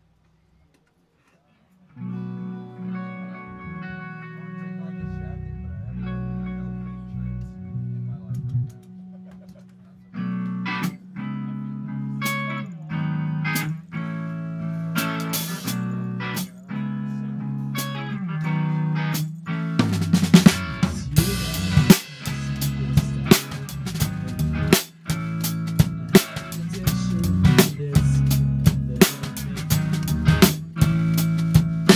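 Live rock band starting a song: after a couple of seconds of silence, a guitar plays ringing chords alone, falls into a strummed rhythm about ten seconds in, and the drum kit crashes in with cymbals and snare about twenty seconds in, the full band playing loud from there.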